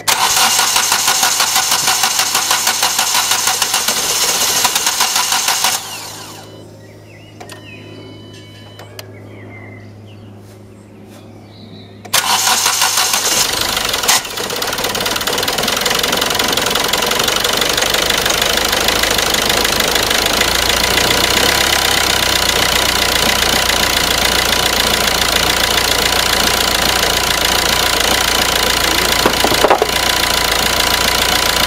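Hyundai i20 common-rail diesel engine, with a newly fitted fuel pressure regulator valve, being started. It cranks for about six seconds without firing, then after a pause cranks again and catches about two seconds later, then idles steadily.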